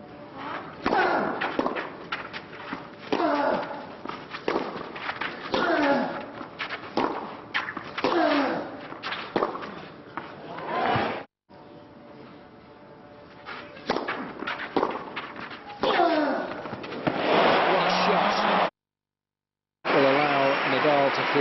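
Tennis rally on a clay court: a racket strikes the ball about once a second, each hit with a short falling grunt from the player. The crowd noise swells near the end. The sound cuts out briefly twice.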